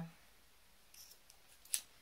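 A pair of scissors giving a single sharp click near the end, as for a snip of wool yarn, after a faint rustle about a second in.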